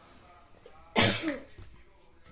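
A person coughs once, sharply, about a second in.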